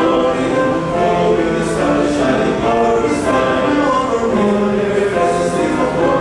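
Male vocal ensemble singing a slow piece in harmony, holding sustained chords that shift from one to the next.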